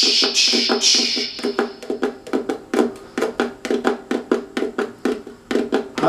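Percussive tapping by hand on the wooden body of a concert ukulele, with the strings left untouched: a quick, uneven run of taps, several a second, that sounds like galloping hooves. A short hiss comes first.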